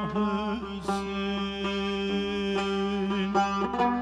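A Turkish folk lament sung by a man: an ornamented, wavering phrase, then a long held note, over a plucked long-necked lute. Sharp plucks from the lute come in near the end.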